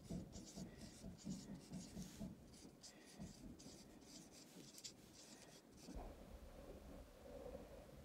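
Faint squeaking and rubbing of a dry-erase marker on a whiteboard as words are handwritten, in a quick run of short strokes.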